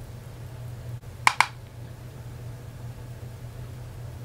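Two sharp clicks in quick succession about a second in, over a steady low hum.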